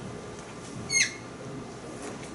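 A single brief high squeak about a second in, dipping slightly in pitch, over a faint steady room hum.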